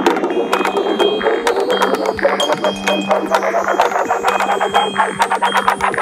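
Electronic music with a steady beat and sustained synthesizer tones, with a high rising sweep building through the second half.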